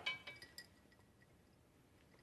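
A brief clink from a glass of iced tea being handled, ringing out for about half a second, then near silence.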